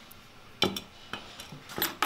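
Steel cage nuts clicking and clinking against a steel mounting bracket as they are handled and fitted: several sharp metal clicks, the loudest about half a second in and near the end.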